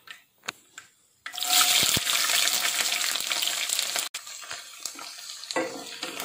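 Chopped garlic tipped into hot oil in a kadai, setting off a sudden loud sizzle about a second in. After about three seconds the sizzle drops to a quieter, steady frying hiss.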